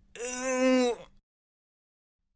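A cartoon character's voice letting out one held wail at a nearly steady pitch, lasting about a second.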